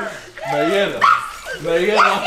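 A person's voice in two drawn-out calls that bend up and down in pitch, one about half a second in and another near the end.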